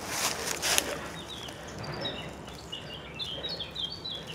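A small bird singing a run of short, high chirps, starting about a second and a half in. A brief rustling noise comes at the very start.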